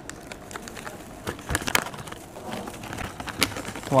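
Foil-lined snack packet crinkling as a hand rummages inside it: irregular sharp crackles and rustles.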